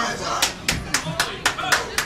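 Rhythmic hand clapping from the wrestling crowd, sharp and even at about four claps a second, starting about half a second in.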